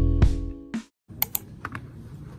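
Background music plays and is cut off within the first second. After a brief silence, a few sharp clicks of computer keyboard keys sound in the second half against quiet room sound.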